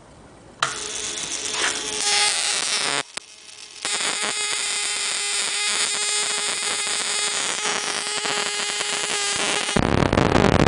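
Homemade buzz coil, a canister ignition coil switched by a self-interrupting five-pin automotive relay, buzzing steadily while its spark plug arcs continuously to a metal bar. It comes on about half a second in, cuts out for about a second around the three-second mark, then buzzes on again.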